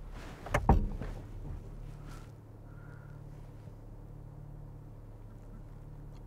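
Lotus Evora's V6 engine running steadily at low revs, heard from inside the cabin, with a low thump about half a second in.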